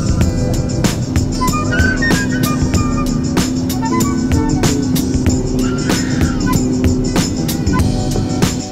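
Background music with a steady beat and a melody over a long held note.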